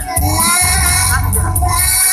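A song being performed: a young voice singing a melody over backing music with a deep, sustained bass line.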